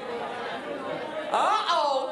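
Speech only: a woman talking over a microphone in a large hall, with other voices murmuring in the first half.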